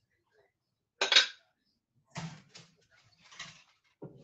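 Cookware and utensils clattering on a stovetop: a loud double clank about a second in, then a few softer knocks and scrapes.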